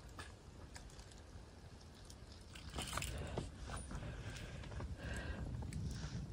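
Faint low outdoor rumble with scattered soft crunches and clicks, more of them from about halfway through.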